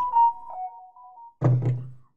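A message-notification chime: a short electronic tune of a few stepped beeps, with a knock at its start. A man's brief low vocal sound follows about a second and a half in.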